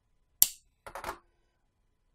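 Plastic back cover of an OUKITEL U7 Pro phone snapping off its clips as it is pried open: one sharp snap about half a second in, then a quick run of smaller clicks.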